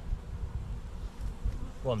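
A swarm of honeybees buzzing around a polystyrene nucleus hive as they crawl in at the entrance, a good sign that the swarm is taking to its new box.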